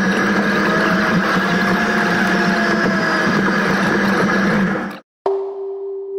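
A dense, noisy wash with a few sliding tones cuts off suddenly about five seconds in. A single struck tone like a singing bowl follows and rings on steadily.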